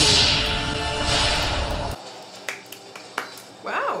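Anime soundtrack: a loud rushing fire-magic sound effect over music, surging at the start and again about a second in, then cut off suddenly about two seconds in. A quieter room follows with a couple of sharp clicks, and a woman's voice begins near the end.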